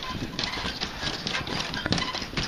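Footsteps of several people walking across a footbridge deck, a quick irregular run of steps.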